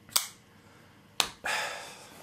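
Open folding knife being handled and set down on a wooden stump: two sharp clicks about a second apart, then a short breathy exhale.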